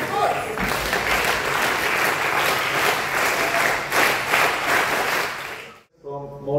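An audience applauding: a dense, steady clapping that cuts off abruptly near the end.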